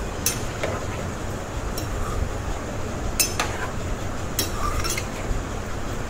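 Metal spoon clinking against a cooking pan about five times, each strike ringing briefly, over a steady background hiss.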